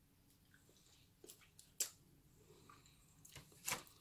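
Near silence broken by a few short, soft clicks and wet lip sounds as lipstick is applied to the lips. The sharpest click comes nearly two seconds in, with a small cluster of them near the end.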